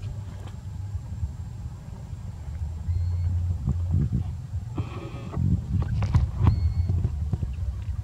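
A short pitched animal call about five seconds in, over a steady low rumble, with a few sharp clicks around six seconds.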